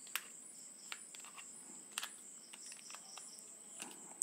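A few faint, sharp clicks of small plastic and metal microphone-mount parts being handled and fitted together, over a steady high-pitched tone in the background.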